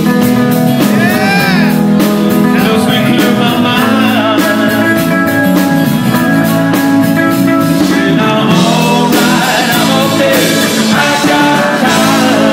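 Live rock band playing loud and steady, with a male lead singer over strummed acoustic guitar, electric guitar and drums.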